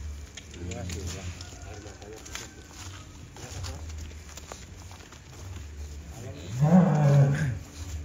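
Cattle lowing: one long, loud, low moo that rises and falls in pitch, about six and a half seconds in, over a low steady rumble and faint voices.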